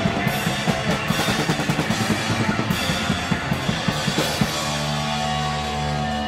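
Hardcore punk band playing live: fast, dense drumming under a full band. About four and a half seconds in, the drums stop and a held note from the guitars and bass rings on steadily.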